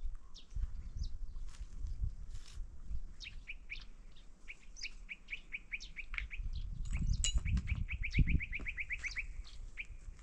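A small songbird calling: short, high chirps repeated in runs, a slower series about halfway through and a faster, trill-like series near the end. Irregular low crunching of footsteps on stony ground runs underneath.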